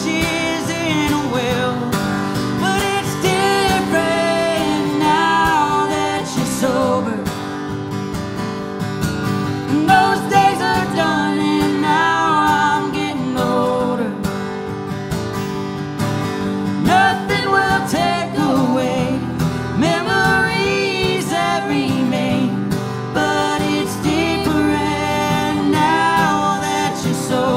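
Live acoustic music: a steel-string acoustic guitar strummed steadily under a man's lead vocal, with a woman's voice singing harmony.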